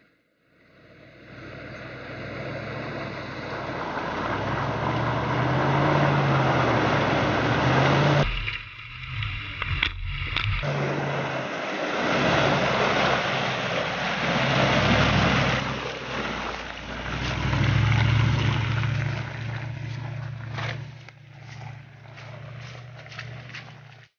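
Range Rover P38's 4.6-litre V8 petrol engine pulling the truck through deep mud, its note rising and falling with the throttle, with mud and water splashing under the tyres. A short dip with a few knocks breaks it about nine seconds in.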